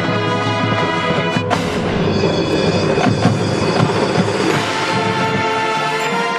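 Marching band playing live: sustained brass chords over percussion, with a sudden crash about a second and a half in and a held high note near the end.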